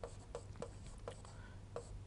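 Faint taps and scrapes of a stylus writing on an interactive display screen, about half a dozen short ticks spread through.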